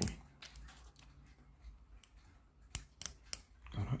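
Several separate sharp plastic clicks from a toy car's friction-motor gearbox being worked by hand: three close together at the start, then three more a little before the end.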